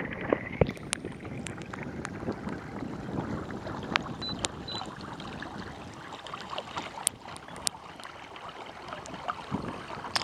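Water rushing and splashing along the hull of a moving Hobie kayak, a steady wash broken by frequent sharp splashy ticks close to the microphone.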